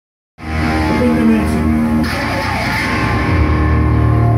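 Live rock band of guitar and electric bass guitar, starting suddenly just under half a second in with held, ringing chords and a deep bass note entering near the end.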